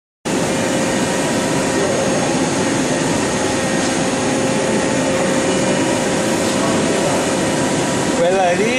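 DMG Gildemeister Twin 65 CNC lathe running through a machining cycle: a steady mechanical whir with a few steady tones, starting abruptly just after the beginning.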